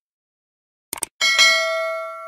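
A quick cluster of mouse-click sound effects about a second in, then a bell ding that rings on and slowly fades: the click-and-chime of a subscribe-and-notify animation.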